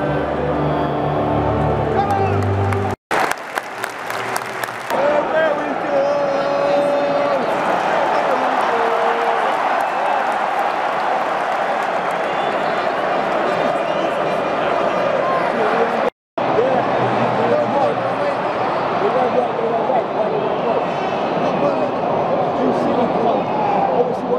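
Music plays for the first few seconds. After a sudden break, the rest is the steady noise of a large football stadium crowd: clapping, voices and chanting blending into one continuous roar.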